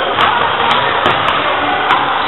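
Echoing din of spectators' voices filling a sports hall, with a few sharp knocks of the ball being kicked across the indoor pitch.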